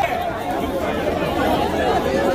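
A crowd of many people talking and calling out over one another in a steady, loud babble.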